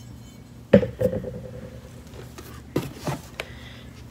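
A small figurine set down on a hard surface with one sharp knock and a brief ring, followed by a few light clicks and rustles of objects being handled.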